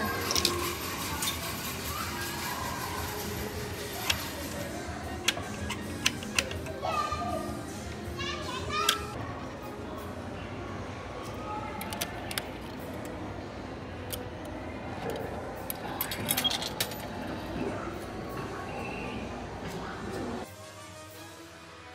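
Busy arcade din: background voices and children, machine music and game sounds, with scattered sharp clicks and clinks from the machines.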